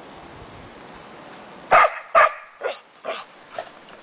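Norwegian elkhound barking: two loud barks about two seconds in, followed by several quieter, shorter ones, over a steady hiss.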